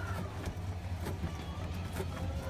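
A steady low hum, with a few light wooden clicks and knocks from a hand-worked treadle loom as the weft is passed and placed.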